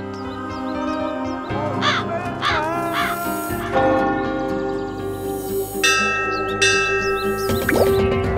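Film-score music of long held tones, with crows cawing several times in quick succession about two seconds in. A bell starts ringing near six seconds in.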